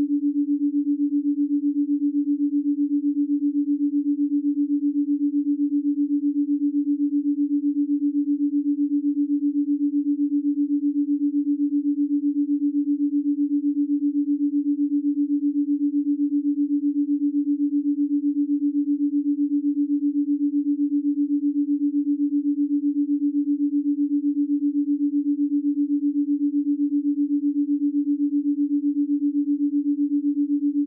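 A 7.83 Hz binaural beat: a steady pure sine tone a little below 300 Hz, made of two tones 7.83 Hz apart, so it wavers in loudness about eight times a second.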